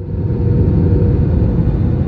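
Jet airliner cabin noise heard from a window seat over the wing: a loud, steady low rumble with a faint steady hum, cutting in abruptly, as the plane flies low on its landing approach.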